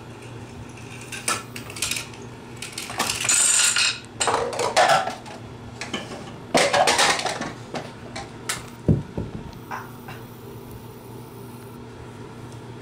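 A homemade Rube Goldberg machine running: a toy car and small balls roll down wooden ramps and knock over a row of dominoes and plastic cups. The sound is a chain of clicks and rolling, clattering rattles in several bursts, with short quieter gaps between them.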